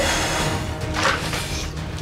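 Background music with a steady low bass line.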